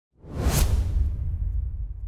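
Whoosh sound effect of a channel logo intro sting. It swells in sharply, peaks in a bright rush about half a second in, and fades out over a low, steady rumble.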